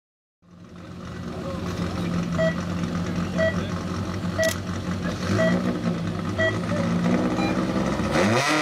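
Škoda Favorit race car engine running at the start line, its revs lifting a little near the end. Over it a start-timing beeper sounds five short beeps, about one a second.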